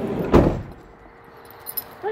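A single sudden thump about a third of a second in that dies away within a few tenths of a second, followed by a low, even background with a couple of faint small clicks near the end.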